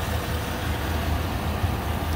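Chevrolet Silverado pickup engine idling steadily under the open hood, a smooth low hum with no knocks or odd noises.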